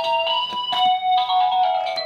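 Baby's battery-powered musical toy panel playing a tinny electronic melody of beeping notes that step from pitch to pitch, with a few short clicks among the notes early on.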